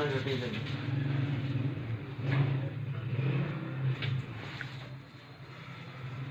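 A low, steady motor hum that fades out about five seconds in, with voices over it.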